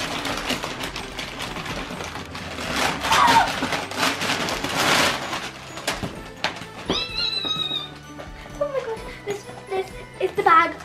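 Wrapping paper rustling and tearing as a present is unwrapped, a dense crackle for the first six seconds or so, over background music. About seven seconds in, a brief high-pitched squeal.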